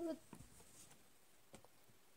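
A woman's voice finishing a short phrase right at the start, then near-silent room tone with a couple of faint clicks.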